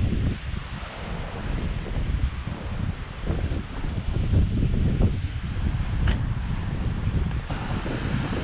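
Wind gusting across the microphone, an uneven low rumble that rises and falls.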